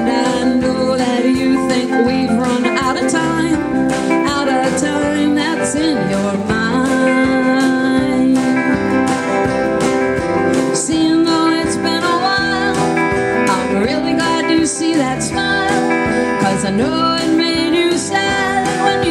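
A live band playing a song: electric and acoustic guitars, electric bass, keyboard and drums together, steady and loud.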